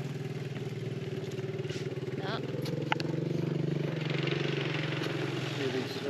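Quad bike (ATV) engine running steadily at low revs, growing a little louder about halfway through as it comes nearer.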